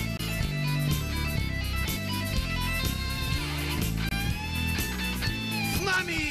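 Instrumental break in a rock song: an electric guitar plays a lead line over bass and a steady beat, bending notes about halfway through and again near the end.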